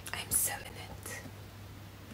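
A woman's soft, whispery speech in about the first second, then a quiet stretch with a faint steady low hum underneath.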